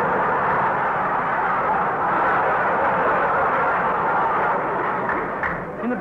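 A large studio audience laughing, swelling within the first half second, holding for about five seconds and easing off near the end. Heard through an old radio broadcast recording, with little above about 4 kHz.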